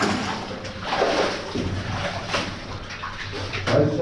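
Wellington boots wading through shallow water on a mine tunnel floor, the water splashing and sloshing with each step in an uneven series of surges about a second apart.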